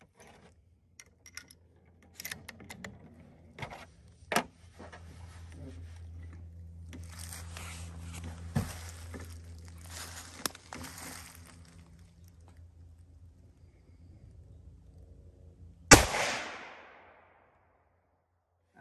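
Scattered clicks and knocks of cartridges and the bolt being handled on a Remington 700 .308 bolt-action rifle, then near the end a single loud rifle shot through a muzzle brake, its echo trailing off over about a second.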